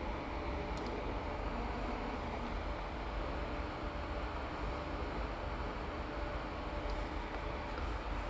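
Steady background hum and hiss with a low rumble, broken only by a couple of faint clicks.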